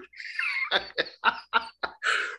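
A man laughing hard, without words: a high, wavering squeal, then a run of short breathy gasps, about four a second.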